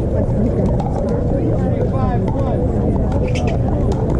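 Pickleball paddles hitting the plastic ball with short sharp pops, mixed with players' voices over a steady low rumble.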